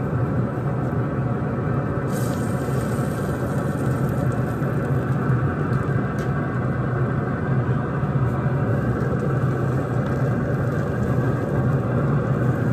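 Steady low hum and rumble of a running pellet grill's fan, even in level throughout.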